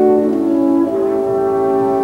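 Orchestra with brass to the fore, French horns prominent, playing slow held chords; the harmony shifts about half a second in and again near the one-second mark.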